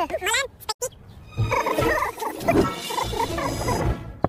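Cartoon soundtrack: a high, wavering voice-like sound in the first second, then a dense, rough jumble of cartoon voices or creature noises over music.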